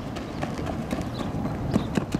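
A softball player's cleated footfalls on infield dirt while sprinting the bases, a quick even patter of about four steps a second.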